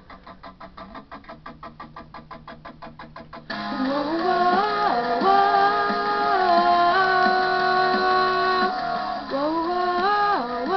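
Quiet backing music pulsing evenly, about seven beats a second, then about three and a half seconds in a girl's voice comes in loud, singing a harmony part in long held notes that step up and down.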